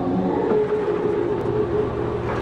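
A dense, steady rumbling drone with sustained low tones that shift in pitch every half second or so: a dark ambient soundtrack bed.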